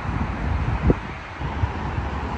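Wind buffeting the microphone outdoors: an uneven low rumble over a steady wash of open-air noise, with one sharp gust about a second in.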